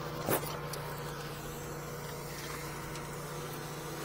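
Steady hum of an idling engine or motor running nearby, with one short sharp knock about a third of a second in.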